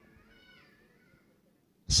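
A faint, high-pitched call that glides up and down in pitch over quiet room tone, fading out about a second in. A man's voice begins just before the end.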